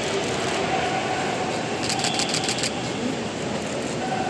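Steady rumble of crowd and traffic noise at a busy airport kerbside, with a quick run of sharp clicks about two seconds in.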